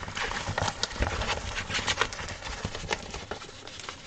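Handling noise as a plastic-wrapped diamond painting canvas is gathered up and slid off a tabletop work surface: plastic rustling, with irregular clicks and knocks throughout.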